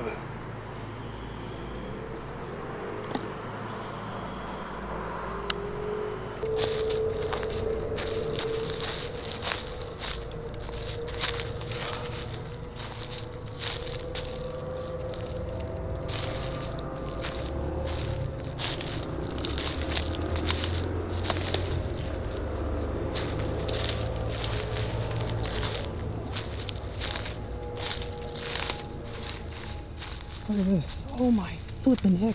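Footsteps on dry leaf litter and twigs on a forest floor, a run of crackles starting a few seconds in, with a steady faint hum underneath.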